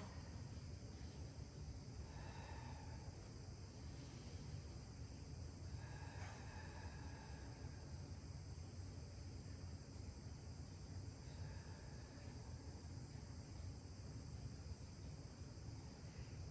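Quiet room tone: a low steady hum with a faint, steady high-pitched whine over it, and a few faint short tones now and then.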